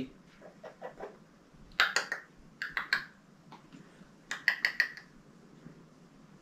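Light, sharp clicks and taps in three short clusters, the last a quick run of about four clicks.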